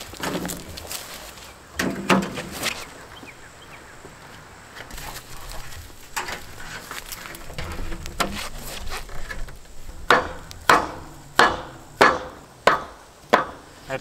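Thin corrugated metal roofing sheets being handled and stacked: a clattering set-down about two seconds in, then shuffling, and from about ten seconds in a steady run of sharp knocks, about one and a half a second, as the stacked sheets are tapped into line.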